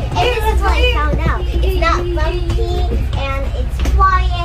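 A young child's voice, talking and singing in a sing-song way with one long held note midway, over the steady low rumble inside a GO Train passenger car.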